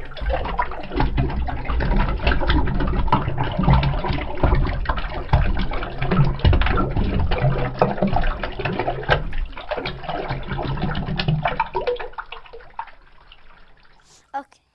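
Gallon jug of white school glue poured into a glass bowl: an irregular liquid glugging and gurgling as the thick glue runs out. It dies away near the end.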